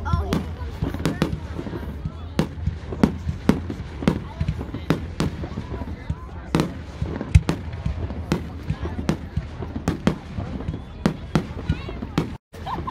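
Aerial fireworks display: a rapid, irregular run of sharp bangs and crackles from bursting shells, several a second, with a few louder reports standing out, the loudest about seven seconds in.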